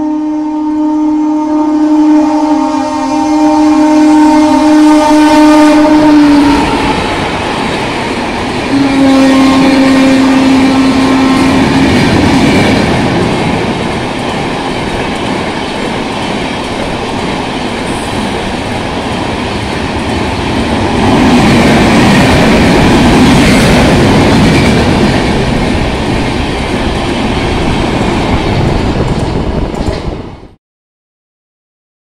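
WAP-4 electric locomotive's horn sounds one long two-tone blast of about six seconds, then a shorter blast a few seconds later as the express train approaches. The coaches then run past at speed, wheels rattling and clattering over the rail joints in a loud, steady rush.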